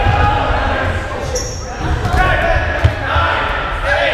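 Rubber dodgeballs thudding on a wooden gym floor amid players' voices, all echoing in the gymnasium, with one sharp hit a little under three seconds in.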